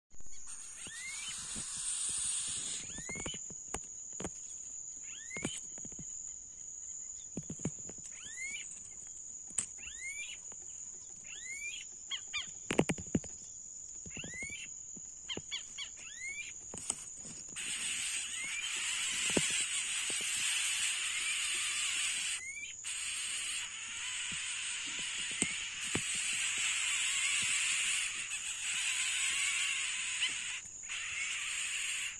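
Outdoor insect chorus: a steady high-pitched insect tone with short rising chirps every second or two and scattered sharp clicks. A louder, hissing insect sound joins about 17 seconds in.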